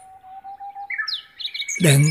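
Birds calling: a long, thin, steady whistle, then from about a second in several short chirps and falling whistles over a higher held note. A voice starts just before the end.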